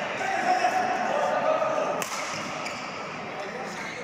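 Badminton doubles rally: rackets striking the shuttlecock, with one sharp hit about two seconds in, and players' footwork on the court, over voices in the hall.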